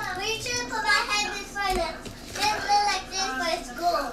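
High-pitched, child-like voices talking in several short phrases in the background.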